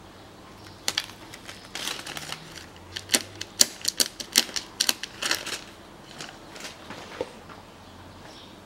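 Clear plastic transfer film being peeled off freshly applied emblem letters on a car's tailgate, crackling and crinkling in an irregular run of sharp clicks, most dense in the middle of the stretch.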